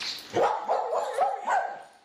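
Three or four short, pitched animal calls in quick succession, fading out near the end.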